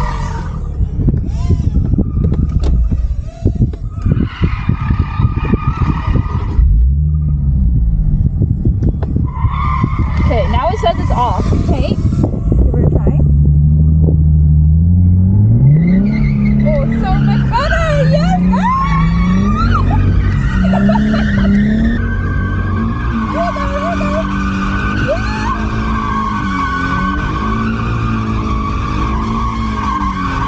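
2017 Nissan 370Z's V6 engine revving up and down in repeated pulls while its tyres skid and squeal through drifts, heard from inside the cabin. A long, steady tyre squeal runs through the second half.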